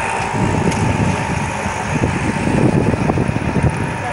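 Loud outdoor street ambience: a dense, low rumble of traffic and crowd noise, with a faint steady hum.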